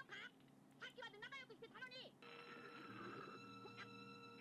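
Faint anime episode audio: a high, expressive character voice speaking, then a steady sustained tone with several overtones that starts about two seconds in.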